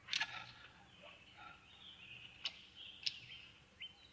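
A short burst of scuffling as an arm is wrenched behind a man's back. Then faint outdoor ambience with thin bird chirps and two sharp clicks, a little over half a second apart, in the second half.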